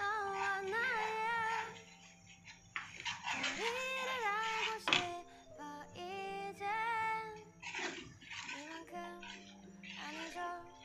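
Background music: a song with a high sung melody that wavers on its held notes, over a steady sustained accompaniment.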